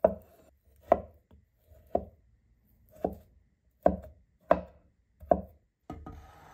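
Cleaver chopping a peeled vegetable on a wooden cutting board: seven sharp chops, about one a second, coming a little faster near the end.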